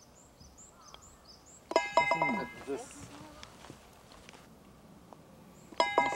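Two short, nearly identical ringing tonal sounds, each starting sharply with a falling glide under it, about four seconds apart: an added sound effect. Faint high bird chirps, about three a second, come before the first.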